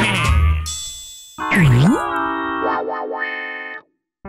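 Cartoon sound effects over music: a hissy whoosh, then a sudden springy swoop that dips in pitch and rises again, followed by a held musical chord that steps down and cuts off abruptly near the end.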